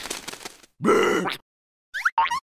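A cartoon larva character's short vocal grunt about a second in, lasting about half a second, after a fading hiss at the start. A brief rising voice sound follows near the end.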